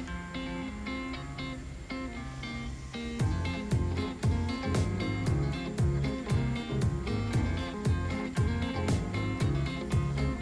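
Background music with plucked-sounding notes, joined about three seconds in by a steady beat and a bass line.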